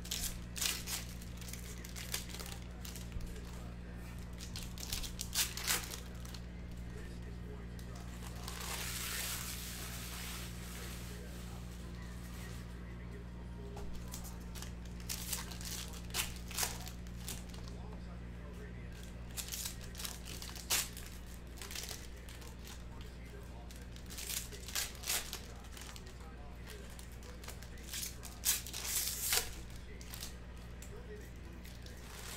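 Foil trading-card pack wrappers tearing and crinkling in short, scattered bursts as packs are opened and the cards handled, with a longer stretch of crinkling about nine seconds in. A steady low hum runs underneath.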